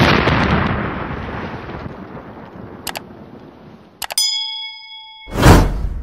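Edited outro sound effects: a sudden loud explosion-style boom that dies away over about four seconds, then a short click. About four seconds in a bright chime rings, and near the end comes a loud whoosh.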